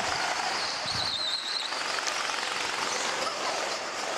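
Go-kart running on track, heard from an onboard camera as a steady noisy rush, with a brief high whine about a second in.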